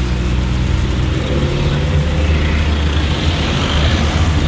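Taxi's engine and road noise heard from inside the cabin as the car drives, a steady low hum that rises slightly in pitch about a second in.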